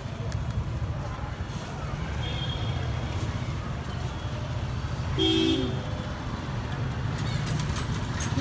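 Steady low rumble of street traffic, with short horn toots about two seconds in and again about five seconds in.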